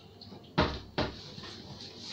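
Two sharp knocks about half a second apart, like something hard bumped against a countertop.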